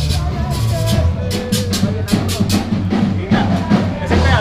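Live band playing rock-style music: regular drum-kit hits over a steady bass, with a melody line on top.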